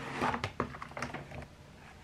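Paper and cardboard packaging being handled while a planner is unboxed: a few short rustles and taps, mostly in the first second or so.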